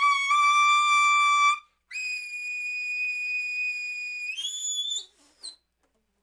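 Baritone saxophone playing long held notes very high in its altissimo register: one note for about a second and a half, then a much higher note held about two seconds that slides up higher still, then a couple of brief high notes, stopping about five and a half seconds in.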